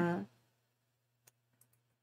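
A voice trails off on a held "uh", then near silence with a low hum and a few faint, short clicks about a second and a half in.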